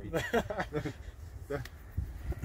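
Men's voices talking for about the first second, then a lull with a short sound about one and a half seconds in.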